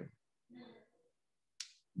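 Near silence in a pause of a man's speech. A faint, brief vocal sound comes about half a second in, and a short sharp mouth click comes just before he speaks again.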